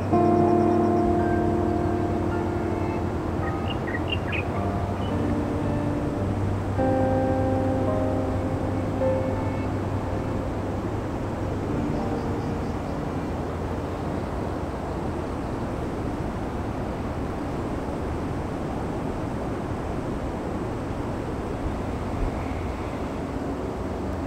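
Soft background music of slow, held notes that thins out about halfway through, over a steady hiss.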